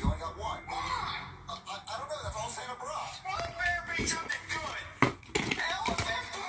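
Voices talking over background music, with a single sharp knock about five seconds in.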